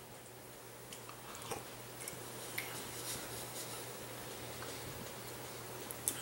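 Faint chewing of a mouthful of beef pot pie (carrot, gravy and crust), with a few soft clicks, over a steady low hum.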